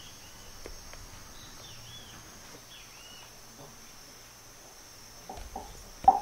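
Faint ambience: a steady high insect drone with a bird giving short arched chirps several times over the first half. A few soft clicks and knocks, louder near the end.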